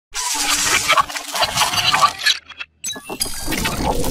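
Intro sound effects for an animated logo reveal: noisy, crackling bursts that cut out briefly about two and a half seconds in, then start again.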